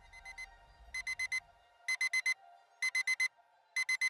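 Electronic alarm beeping: groups of four quick, high beeps, repeating about once a second, the first group faint and the rest louder.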